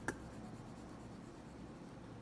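An oil pastel being scribbled on paper: a faint, even rubbing of the stick against the sheet, with one short tap just at the start.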